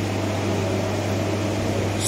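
Steady low hum with an even background hiss, the room tone of a microphone-amplified hall in a pause between phrases of speech.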